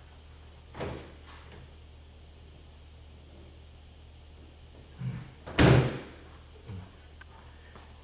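A loud single clunk from the golf cart as it is handled, a little past halfway through, with a smaller knock just before it and a softer knock about a second in, over a steady low hum.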